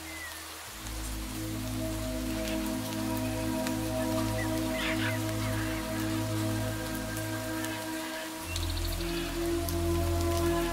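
Steady patter of rain under soft ambient music of long held chords; the chords change about a second in and again near the end.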